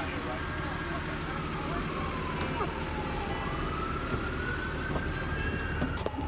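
Emergency vehicle siren wailing: one slow cycle, its pitch falling over about three seconds and then rising again. Under it is a steady low background rumble.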